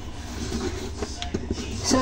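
A steady low hum with a few faint light clicks about a second in.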